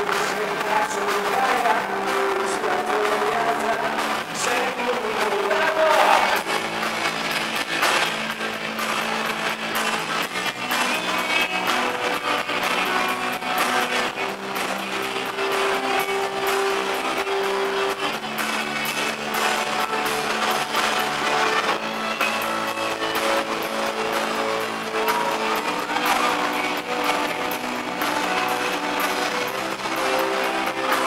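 A live rock band playing a song: a male singer with guitars. The voice carries the first few seconds, held guitar chords fill a middle stretch, and the singing returns near the end.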